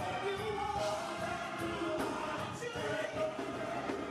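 A small gospel vocal group singing together into microphones, several voices holding sustained notes over a musical accompaniment.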